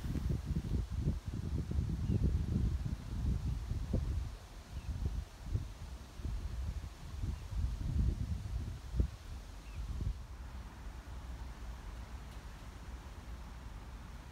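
Wind buffeting the microphone in irregular gusts, a low rumble that eases to a steadier, quieter hiss after about ten seconds.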